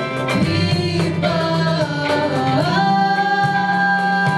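Live pop band performance: female vocals singing over electric guitar and keyboard. About two and a half seconds in the voices glide up into a long held note.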